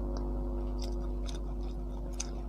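Close-up chewing of a crisp fried samosa: scattered short, crisp crackles of the pastry being chewed, over a steady low hum.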